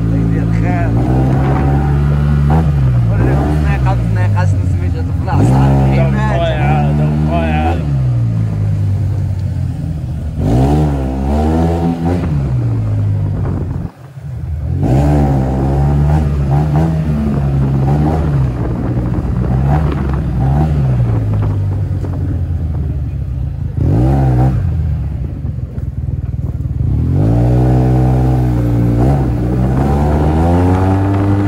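A Yamaha maxi-scooter's engine running steadily while riding, under a voice singing in long, wavering lines. Both break off briefly about 14 seconds in.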